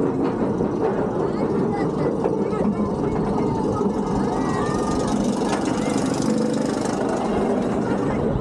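Floorless roller coaster train running up the last of its chain lift hill and cresting the top, a steady mechanical rumble and rattle heard from the front seat.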